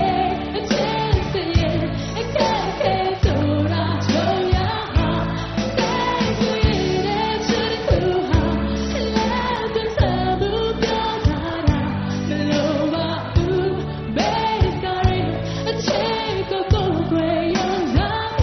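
A woman singing a Burmese pop song live with a rock band: electric guitars, bass and drums keeping a steady beat.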